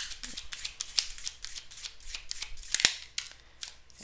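A deck of cards being handled on a wooden table: a run of light, quick clicks and snaps, with sharper snaps about a second in and near three seconds.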